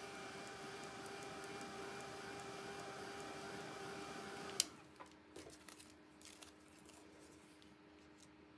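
Small handheld hair dryer running steadily, blowing on wet acrylic paint to dry it, with a steady whirr and a faint whine. It switches off with a click a little past halfway, followed by a few light taps as a plastic stencil is laid down.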